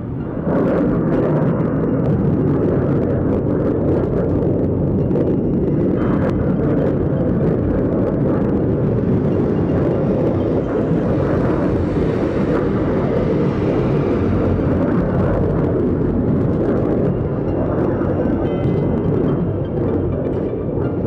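Rockets launching in a salvo: a steady, loud, low roar of rocket motors that holds unbroken through the whole stretch.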